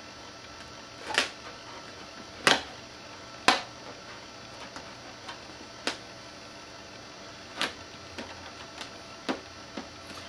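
Scattered sharp clicks and light taps, about six distinct ones spread unevenly over the stretch, as vinyl wrap film is handled and pressed down flat onto a fiberglass hood.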